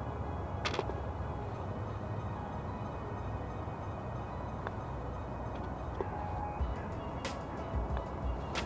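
Odyssey Stroke Lab 10 putter, with its firmer Microhinge Star face insert, striking golf balls: a sharp click about a second in, a fainter one midway and another near the end. Faint background music and a steady low rumble run underneath.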